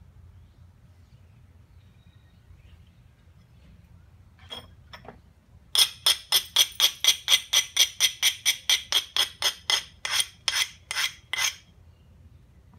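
Two single taps, then a fast, even run of about two dozen bright, ringing strokes on a flint biface, about four or five a second, from quick repeated edge work on the stone.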